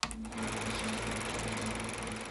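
Logo sting: a sharp hit, then a dense, steady buzzing sound effect with a low hum underneath.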